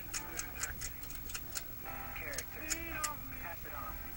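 A thin clay-sculpting tool scraping the side of a small piece of clay: a quick run of light, dry scratches, several a second, sparser toward the end.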